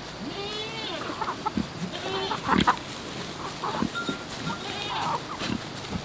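Pigs grunting and calling with hens clucking: a run of short animal calls throughout.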